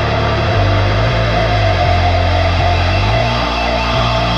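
Rock music with guitar over a bass line that moves to a new note every second or so, continuous and at an even loudness.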